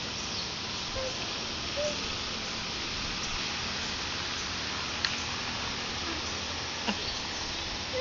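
Steady outdoor background hiss, with two brief faint tones about one and two seconds in and a sharp click about five seconds in.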